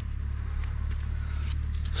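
Steady low background rumble with a few faint clicks over it.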